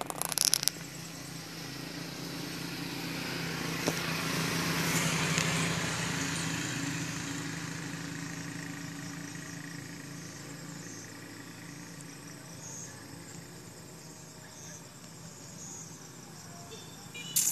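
A motor vehicle passing by, its engine growing to loudest about five seconds in and then slowly fading away. A short burst of clicks at the very start.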